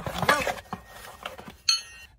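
Steel axle popper tools being slid out of their cardboard box, with rustling handling noise and a sharp, ringing metal clink near the end as the two pieces knock together.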